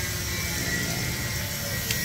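A steady, low mechanical hum of a running motor.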